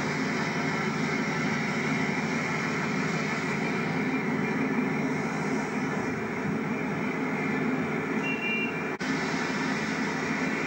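Diesel engine of an InterCity 125 (HST) Class 43 power car running steadily at the platform, a constant drone with a whine over it. About nine seconds in, the sound breaks off for an instant where the recording cuts, then the same drone carries on.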